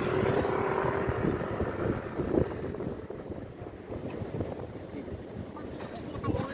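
Low rumble and wind buffeting the microphone from inside a car that is moving. Louder for the first couple of seconds, then easing off about three seconds in.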